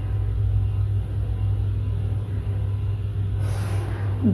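A steady low hum, with a soft scrape of a marker drawn along a ruler on paper near the end.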